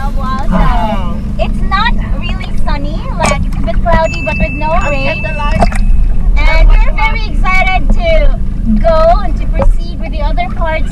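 People talking and exclaiming over the steady low hum of a boat engine running.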